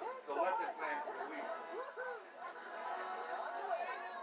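Indistinct voices chattering, with pitch rising and falling throughout but no clear words.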